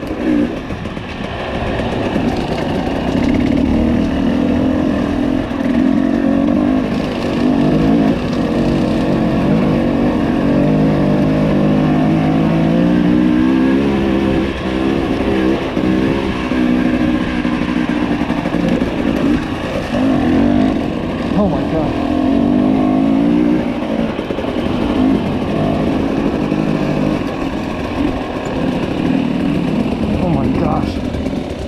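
Husqvarna TE300i 300 cc two-stroke enduro motorcycle engine riding a dirt trail, its pitch rising and falling over and over as the throttle is worked on and off.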